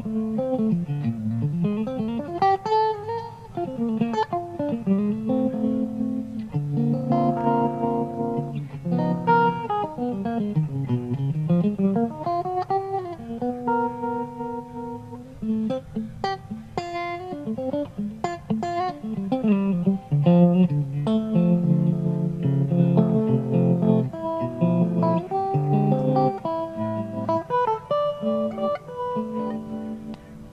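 Solo electric guitar, a Fender Stratocaster, played through a ToadWorks PipeLine pedal, with its stereo tremolo/harmonic vibrato panning the sound between two speakers. Melodic lines and chords, with the pitch swooping down and back up twice: about a second in and again about eleven seconds in.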